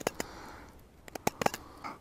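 Knife blade making small cuts into a hand-carved wooden spoon, a handful of short, sharp clicks as it bites into the wood.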